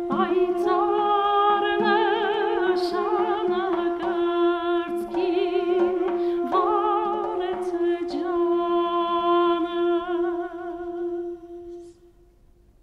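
Armenian folk song performed by a female singer with a trio of duduks. One duduk holds a steady drone note beneath a melody with a wide vibrato, and the music dies away near the end.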